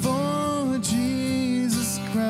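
A man singing a slow worship song into a microphone while accompanying himself on strummed acoustic guitar; the voice holds two long notes in a row.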